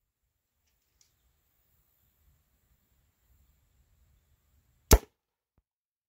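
A single sharp air rifle shot near the end, fired at a ballistic gel block, with a faint low rumble before it.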